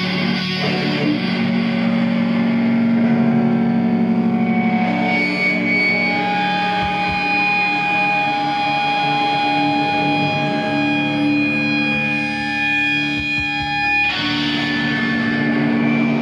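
Live, loud distorted electric guitars and bass holding long, ringing sustained notes without drums, the held tones shifting every few seconds and changing abruptly about 14 seconds in.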